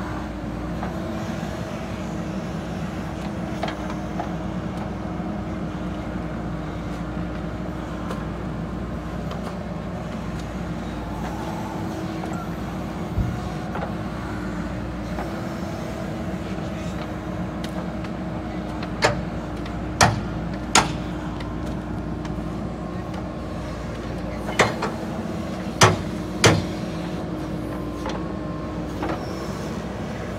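JCB 3DX backhoe loader's diesel engine running steadily under hydraulic load, a constant drone with a held hum, while it swings and digs soil. In the second half come six sharp knocks, three in quick succession and then three more a few seconds later.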